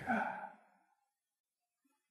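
A man's voice saying a drawn-out "ah" that trails off within the first half second, followed by near silence.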